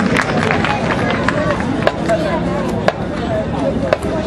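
Indistinct chatter of many spectators talking at once in a stadium's stands, with a couple of sharp clicks about two and three seconds in.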